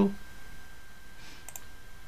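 A single computer mouse click about one and a half seconds in, over a steady low hiss.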